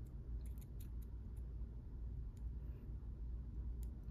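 Faint, scattered small clicks and scrapes of a metal Allen wrench tip prying at a button-cell battery in its metal holder, over a low steady room hum.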